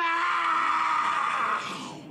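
A man's long, strained shout: one drawn-out cry at a steady pitch that fades out near the end.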